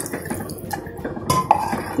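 Water poured from a steel vessel into a clay pot of mutton gravy, splashing into the liquid, with a few light knocks of a wooden spatula stirring against the pot. The water is being added to thin the masala so it can boil and cook.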